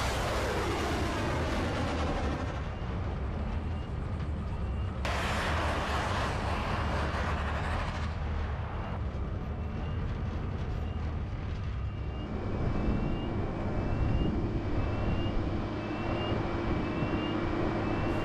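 Rocket of a MICLIC mine-clearing line charge rushing away after launch, its noise fading with falling pitch over the first few seconds. A second burst of rushing rocket noise follows about five seconds in. After that comes a steady low vehicle engine hum with a faint short chirp repeating about once a second.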